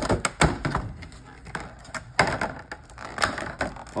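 Plastic packaging and cardboard of a trading card collection box being torn open and handled: an irregular run of crinkles, clicks and light taps.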